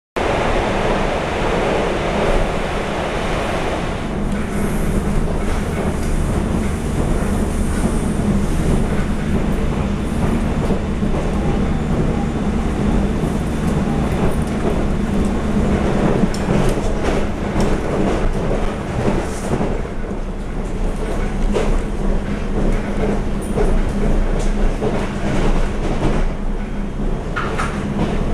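Inside a TRA EMU700 electric multiple unit running at speed: a steady rumble of wheels on rail with a low hum, heard through the carriage. Scattered clicks and knocks from the wheels passing over the track come more often in the second half.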